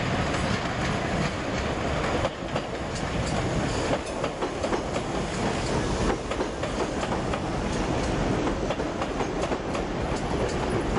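Electric multiple unit passing close by over pointwork, its wheels clicking irregularly over rail joints and crossings above a steady running rumble.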